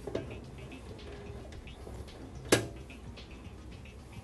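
Screwdriver and screws on a steel PC case drive cage while the hard drive's mounting screws are taken out: a few faint small clicks, then one sharp metallic clank about two and a half seconds in.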